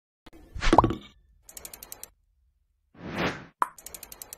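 Logo-animation sound effects: a swelling whoosh with a short pitched blip about half a second in, then a run of rapid, crisp clicks. Near the end a second whoosh builds, followed by a sharp hit and another quick run of clicks.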